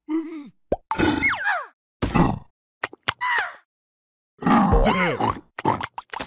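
Cartoon characters' wordless vocal noises: a string of short calls whose pitch slides up and down, with a few short comic pops and knocks between them. The loudest call comes about three-quarters of the way through.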